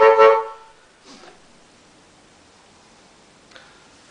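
Amplified blues harmonica played through a vintage Shure Green Bullet microphone and small amplifier: a held note ends about half a second in. Afterwards only a faint steady hiss with a couple of soft handling knocks, and no feedback tone.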